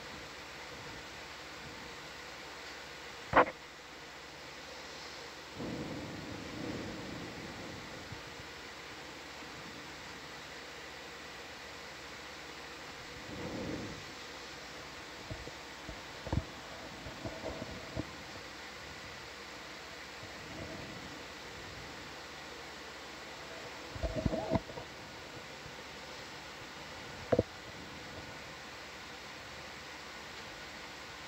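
Steady hiss of an open audio channel, with a sharp click a few seconds in, a few soft low rumbles, and scattered short knocks, the largest cluster of them near the end.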